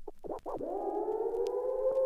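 Electronic closing music starts: a few short synth notes, then a sustained synthesizer tone that glides up slightly and holds steady.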